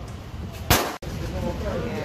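A single gunshot about two-thirds of a second in, ringing briefly in an enclosed indoor range before it cuts off abruptly.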